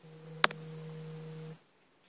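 A steady, flat low tone held for about a second and a half, with a single sharp click about half a second in; the tone then cuts off.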